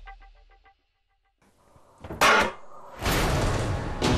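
Rhythmic background music fades out into a moment of silence. About two seconds in comes a short, loud whoosh sound effect, and then dramatic theme music starts loud near the end.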